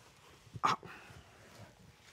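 A man's short spoken exclamation, "Oh," a little over half a second in; otherwise faint room tone.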